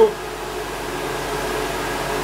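Wall-mounted electric hot-air dryer running steadily: an even rush of blown air with a faint motor hum.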